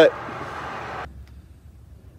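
Road traffic on a highway: a steady rush of vehicle noise that cuts off abruptly about a second in.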